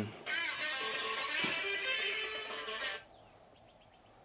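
Electric guitar music with strummed chords, cutting off abruptly about three seconds in and leaving only faint room tone.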